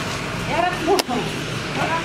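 A single sharp plastic click about halfway through as an air fryer is handled, with a child's short voice sounds just before it and again near the end, over a steady low hum.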